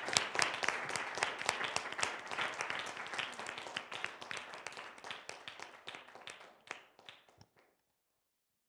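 Audience applauding, the clapping fading away gradually and dying out about seven and a half seconds in.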